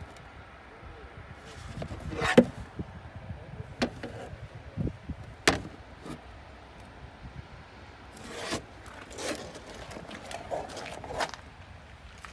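Handling noise from a plastic fuse box cover: a few separate sharp clicks and knocks with some scraping, then a run of footsteps on pavement near the end.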